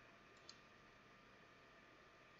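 Near silence, with one faint click about half a second in, from a computer mouse.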